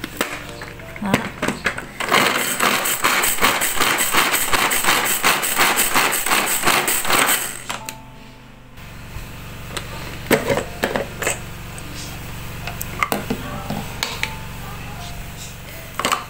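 Handheld pull-cord garlic chopper working: its blades rattle and whirr in fast, even strokes as the cord is pulled again and again, mincing garlic and chillies. After about six seconds this stops, and a few scattered clicks and knocks follow as the plastic chopper is handled.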